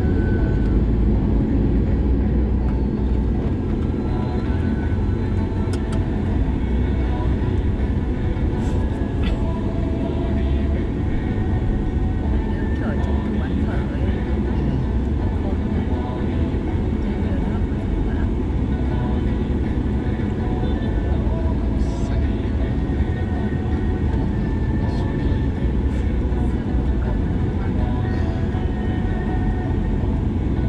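Steady low road and engine rumble of a Mercedes-Benz car driving through city streets, heard from inside the cabin.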